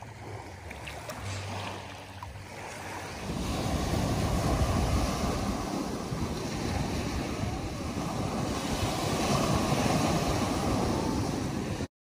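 Sea water washing over the sand at the shoreline, then, from about three seconds in, louder waves breaking and rushing up a sand beach, with wind buffeting the microphone. The sound cuts off suddenly just before the end.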